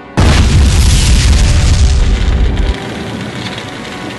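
A loud explosion-like boom sound effect hits just after the start with a deep rumble, then cuts off sharply about two and a half seconds in, leaving held music notes underneath.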